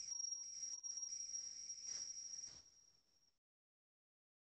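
Electronic music playing from a production setup: a thin, steady, high-pitched synth tone with a faint crackly tail fades away, then playback stops dead about three seconds in.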